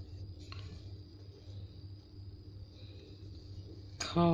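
Blue felt-tip marker drawing a letter on lined notebook paper, a faint soft scratching over a steady low hum, with one small click about half a second in.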